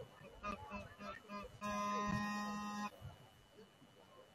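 Stadium horn sounding one steady blast of a little over a second, starting about one and a half seconds in.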